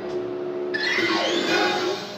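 Cartoon soundtrack music, joined about a third of the way in by a noisy sound effect with falling pitches that lasts just over a second and then cuts off.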